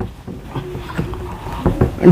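A cloth rubbing across a whiteboard as it is wiped clean: an irregular scrubbing with a few soft knocks.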